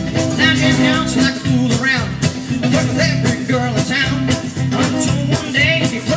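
Jug band playing an instrumental break with fiddle, banjo, acoustic guitars and upright bass over a steady beat, a wavering melody line carried above the strumming.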